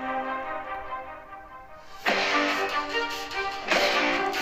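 Background music: one passage fades away over the first two seconds, then new music starts suddenly about halfway through and carries on.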